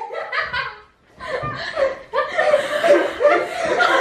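Several people laughing, with a short lull about a second in, then louder laughter from about two seconds in.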